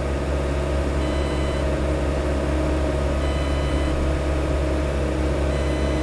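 Mecalac 6MCR excavator's diesel engine running steadily while its hydraulics work the quick coupler to pick up a pallet-fork attachment. A faint high beep of under a second repeats about every two seconds.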